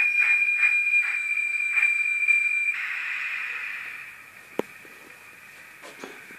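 Model steam railcar's sound effects: a steady high whistle with faint even beats under it cuts off sharply, then a steam hiss that fades away. A single sharp click follows near the end.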